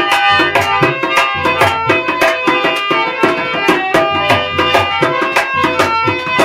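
Tabla and harmonium playing together without voice: a quick, even tabla rhythm of several strokes a second, with low booming bass-drum strokes, over sustained harmonium chords.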